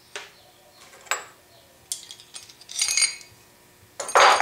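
Steel washer freshly cut from 10-gauge sheet and other steel parts handled, giving about four separate light metallic clinks, the last one a little longer like a short scrape.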